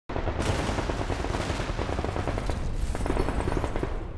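Heavy, continuous gunfire: many rapid shots overlapping over a low rumble.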